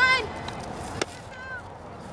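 A voice calling out, ending just after the start, then a single sharp crack of a softball impact about a second in.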